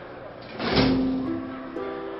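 Background film score: a sudden swelling chord about two-thirds of a second in, its notes held steadily, with a new chord entering near the end.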